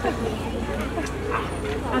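People talking close by, with voices of children among them, over a steady low hum.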